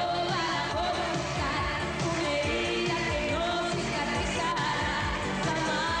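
A woman singing a Latin pop song live over a full band backing with a steady beat.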